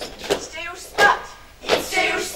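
Sharp thumps of actors' hands striking a wooden stage floor, four knocks about half a second apart, with a brief vocal call between the first two.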